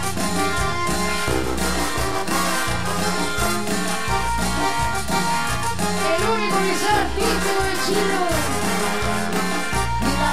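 Live cumbia band playing an instrumental passage, with a horn section of saxophone and trombone over bass and percussion.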